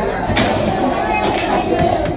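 Indistinct background voices in a busy indoor play centre, with no clear nearby speaker or distinct sound event.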